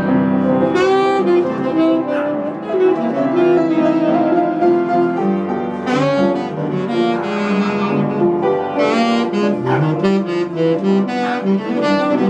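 Tenor saxophone playing a melody over upright piano accompaniment, some long notes held with a wavering pitch.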